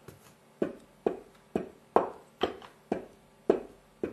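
A wood-mounted rubber stamp knocking down repeatedly onto ink pad and fabric on a hard tabletop: about nine quick taps, roughly two a second, each with a short ring.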